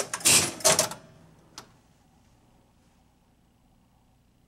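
1965 Gottlieb Bank-a-Ball electromechanical pinball machine powering up. It gives a burst of relay and coil clatter lasting about a second as it resets its dropped target balls, then one more sharp click about a second and a half in.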